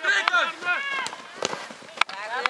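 Several high-pitched voices of young football players calling out across the pitch, wordless or unclear, with a few sharp knocks in between.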